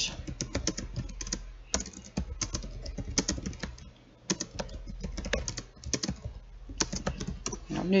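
Typing on a computer keyboard: a quick, irregular run of keystrokes with a brief pause about midway.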